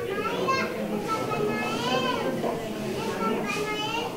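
Children's high voices talking and calling out over the murmur of a crowded room.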